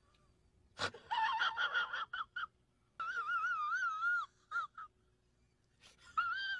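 A man's high-pitched, wavering whimper or whine in two stretches, with short breaks, after a single click.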